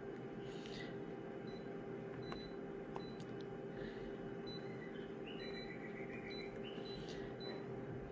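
Photocopier touchscreen beeping as zoom values are keyed in: a string of short, high key-press beeps, with a longer, lower confirmation tone about five seconds in. The copier's steady hum runs underneath.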